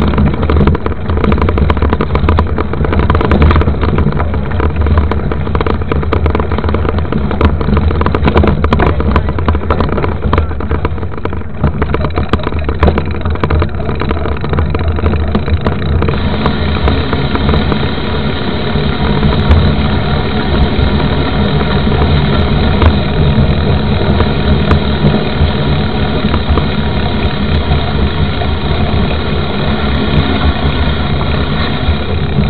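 Rushing wind and tyre rumble picked up by a camera mounted beside a mountain bike's knobby tyre as it rides fast over a gravel dirt road. The roar is steady and loud, with frequent clicks and rattles from stones and the mount.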